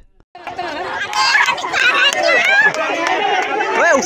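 A crowd of people talking and calling out over one another, starting a moment in, with a high voice rising and falling near the end.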